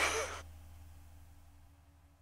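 The last sound of a heavy metal track dies away in the first half-second, with a brief breath from the singer. Then near silence with a faint low hum.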